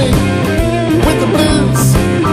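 Electric blues band playing an instrumental passage: an electric guitar lead with bending notes over bass and drums.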